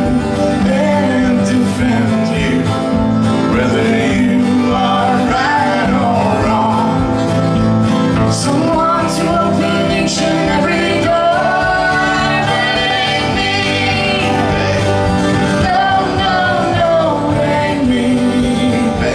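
Live acoustic country-folk band: two strummed acoustic guitars and an electric bass under a sung vocal melody.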